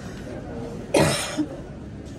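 A single loud, sharp cough close to the microphone about halfway through, with a short throaty catch just after it, over the steady murmur of a terminal hall.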